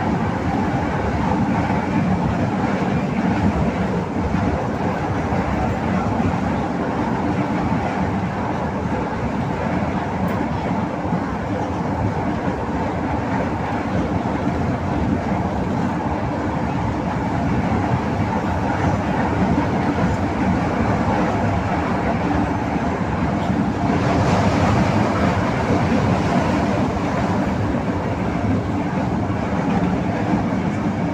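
LRT Line 1 light-rail train running along its elevated track, heard from inside the car: a steady, loud rolling rumble of wheels on rails. A brighter hiss joins about six seconds before the end.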